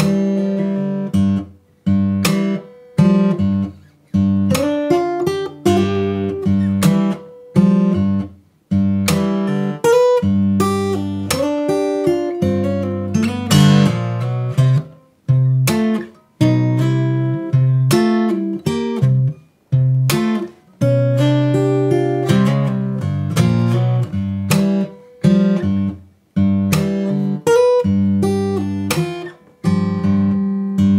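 Martin J-40 acoustic guitar in open G tuning (DGDGBD), played slowly fingerstyle in an acoustic blues: steady bass notes under treble licks and slides, with percussive clicks struck on the strings between notes.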